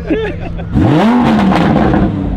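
Lamborghini Huracán's V10, fitted with an aftermarket exhaust, revving hard as the car pulls away, starting a little under a second in. The pitch climbs quickly, peaks, then eases back into a steady, loud drone.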